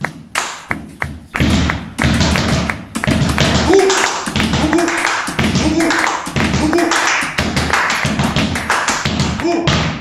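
Body percussion ensemble playing a fast joropo rhythm in 3/8. Sharp hand claps are layered with slaps on the chest and low thumps. Single claps come about twice a second at first, and from about a second and a half in the pattern thickens into a dense, driving groove.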